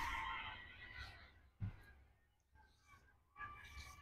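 Faint distant voices of people calling out, once about a second in and again near the end, over a quiet outdoor background, with one soft low thud in between.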